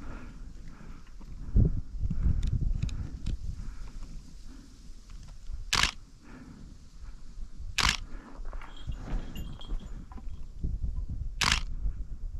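Three sharp, short camera shutter clicks, about six, eight and eleven and a half seconds in, over low thumps and rustling from a hiker moving about on a gravel trail.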